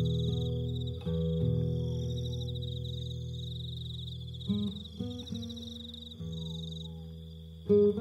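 Acoustic guitar playing slow chords that ring out, with new notes struck about a second in, a few more in the second half, and the loudest stroke near the end. Crickets chirp steadily underneath in a high, pulsing trill.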